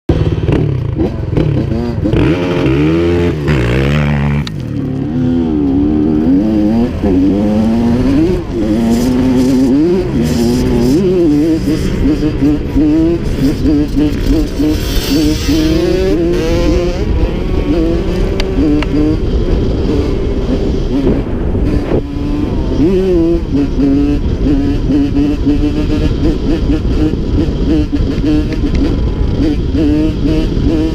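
Honda CR85 two-stroke dirt bike engine, heard from on the bike, revving up and down over and over as it is throttled and shifted along a trail.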